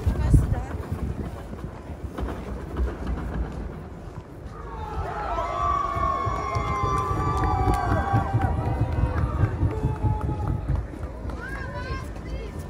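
Footsteps on snow and a low, uneven rumble of wind on the microphone, with passers-by's voices close by from about five to ten seconds in.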